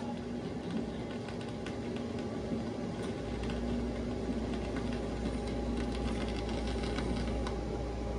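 Stylus of a turntable riding in the run-out groove of a vinyl LP after the song has ended: a steady surface hiss with faint scattered crackles and clicks. A low hum comes in about three seconds in.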